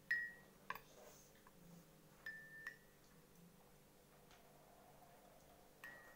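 Three faint, light clinks, each with a brief high ringing, at the start, about two and a half seconds in, and near the end, with a few softer ticks between, over a near-silent room.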